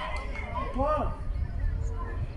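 Voices shouting during a youth football match: a few short called-out shouts, the clearest about a second in, over a steady low rumble.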